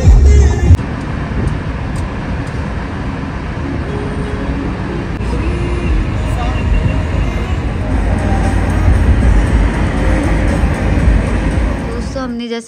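Road and wind noise from a moving car, a steady rush, with a loud low rumble in the first second.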